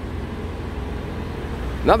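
Outdoor street background noise: a steady low rumble with no distinct events, until a voice starts near the end.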